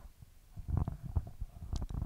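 Handheld microphone handling noise: irregular low thuds and rumbles as the mic is passed from one person's hands to another's, with a couple of sharper clicks near the end.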